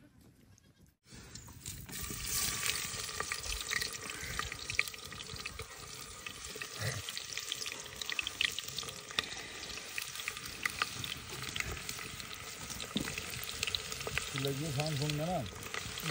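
Sliced onions, red chillies and seeds frying in hot oil in an aluminium pressure-cooker pot over a wood fire: a steady sizzle full of small pops and crackles, starting about a second in.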